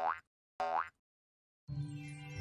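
Two short cartoon boing sound effects, each a quick upward-gliding springy tone, for an animated bounce. A soft musical jingle starts near the end.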